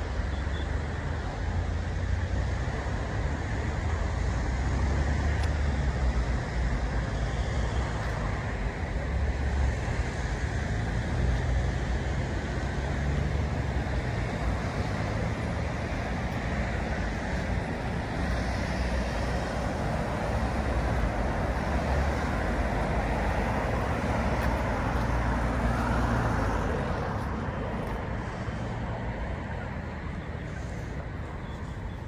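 Steady road traffic noise: a continuous rumble and hiss of passing cars, without a break.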